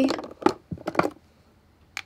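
Lip gloss tubes clicking against each other and against a makeup drawer's grid organiser as they are picked up by hand: a few sharp clicks in the first second, a pause, then one more click near the end.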